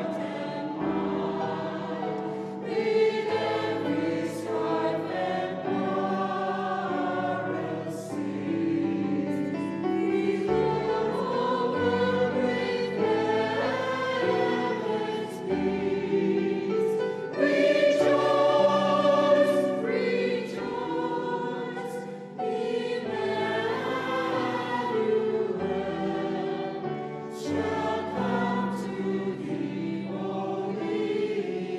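Mixed choir of men and women singing a Christmas carol in parts, in phrases that swell and ease, loudest about eighteen to twenty seconds in.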